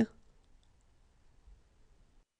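The clipped end of a spoken letter name right at the start, then near silence with faint room tone.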